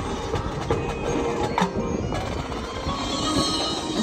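Marching band playing a softer passage: held wind chords under a general hum, with one sharp percussion hit about a second and a half in.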